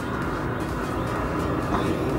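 Steady low background rumble with a faint hiss over it, holding at an even level.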